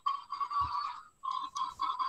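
Small battery sound chip in a children's touch-and-sound board book playing a recorded buffalo grunt through its tiny speaker, set off by pressing the buffalo on the page. Thin and tinny, in two stretches with a short break about a second in.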